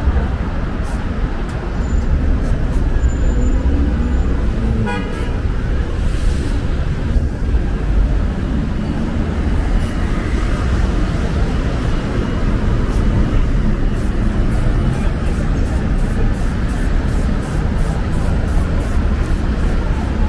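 City street traffic noise: a steady low rumble of passing vehicles, with a brief horn toot about five seconds in.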